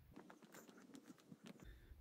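Near silence, with faint soft footsteps scattered through it.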